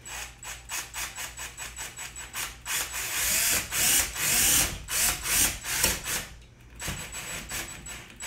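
DeWalt 12V cordless drill/driver driving a stud screw through a steel TV wall-mount plate into a wooden wall stud. Rapid clicking for the first couple of seconds, then the motor whine rises and falls under load, loudest about midway, with lighter clicks again near the end.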